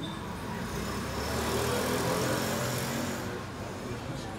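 A road vehicle passing by: its noise swells about a second in and fades away a little after three seconds, over a steady low hum.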